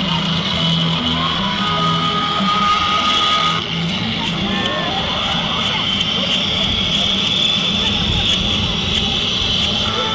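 Parade street sound: music with a repeating bass line playing steadily, mixed with the voices of marchers and onlookers.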